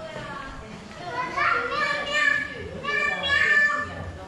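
A toddler's high-pitched voice calling in two long sing-song calls, about a second in and again near the end, after a fainter call at the start. Typical of a small child calling 'miao miao' (meow meow) after a cat.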